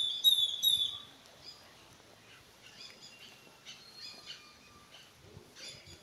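Birds calling in trees: a loud, high, whistled call in the first second, then faint short chirps scattered through the rest.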